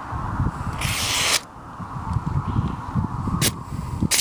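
Thin folded phone-book paper rustling as it is handled and sliced with a sharpened pocket-knife edge, in a paper-cutting sharpness test. A brief hissing swish about a second in and a sharp tick near the end, over an irregular low rumble.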